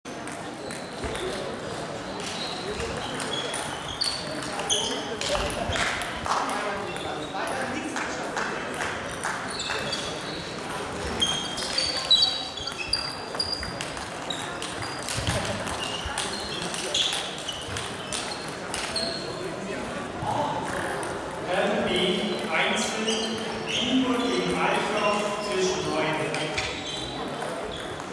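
Table tennis balls clicking against bats and tables in a sports hall, with people talking throughout and most steadily in the last several seconds.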